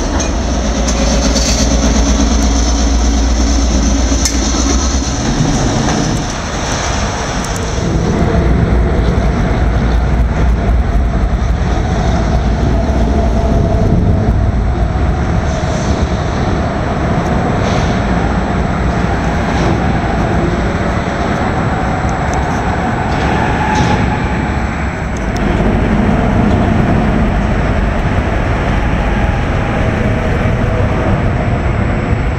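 Diesel freight train moving past: Norfolk Southern locomotives running and freight cars rolling on the rails. A deep engine drone is strongest in the first few seconds.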